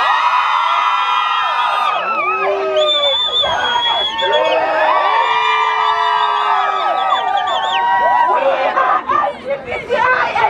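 A large crowd of marchers singing and shouting together, many voices holding long notes that overlap and rise and fall.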